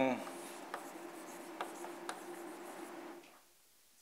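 Chalk writing on a blackboard: faint scratching strokes with a few sharp taps as letters are chalked, stopping a little after three seconds in.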